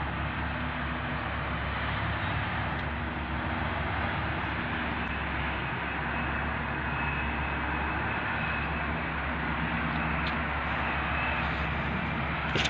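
Steady outdoor rushing noise with a faint low hum underneath, unchanging throughout.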